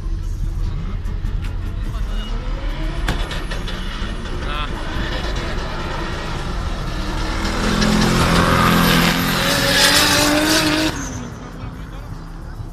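Car engine accelerating hard on a drag strip, its pitch rising. It grows loudest over the last few seconds with a harsh hiss on top, then drops away sharply about a second before the end.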